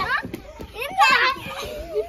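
Children's excited high-pitched voices during a playful scuffle, with a loud shout about a second in.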